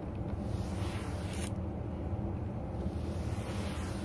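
A brush dragged through dyed faux fur in long strokes to straighten it. Each stroke is a swish that builds and ends in a sharp scratch as the brush clears the fur, one about a second and a half in and another building near the end, over a steady low rumble.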